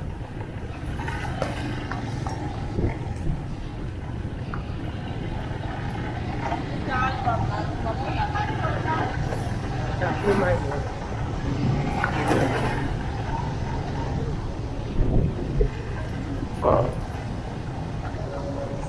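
Motorcycle engine running at low speed, a steady low hum throughout, with voices of people in the street rising over it several times.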